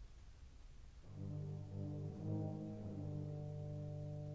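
Orchestral music from a classical recording. After a quiet stretch with only faint hiss and rumble, a soft, low sustained chord enters about a second in and holds steady.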